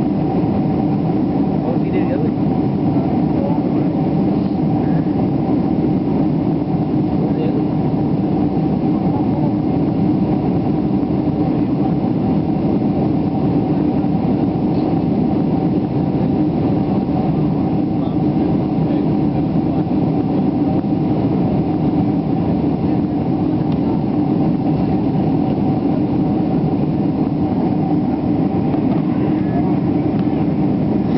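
Steady cabin noise of a jet airliner in cruise flight: a constant rushing drone of engines and airflow with a steady hum running through it.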